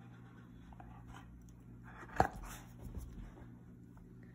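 Dog moving about at close range: faint rustling over a steady low hum. A single sharp click about two seconds in, with a softer knock shortly after.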